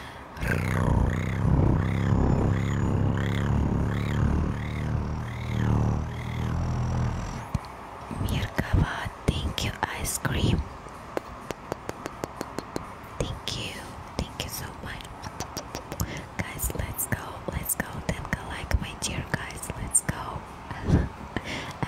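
ASMR mouth sounds made right against a microphone: first a low, wavering hum for about seven seconds, then a long run of quick clicks and lip smacks.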